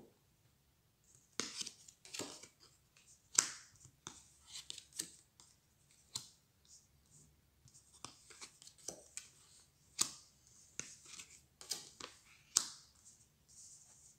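Cards of a board game being handled, flipped over and slid on a play mat: soft snaps and scrapes, about a dozen, spread irregularly.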